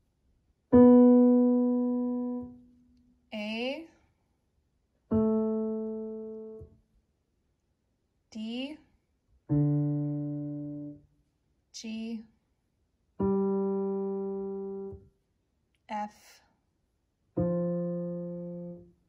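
Single piano notes played one at a time with one finger, five in all at different pitches. Each is struck and left to ring for a second or two as it fades, with a short spoken word between notes.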